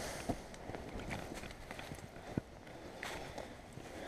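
Quiet, irregular footsteps on dry fallen leaves, with a couple of sharper knocks among the steps.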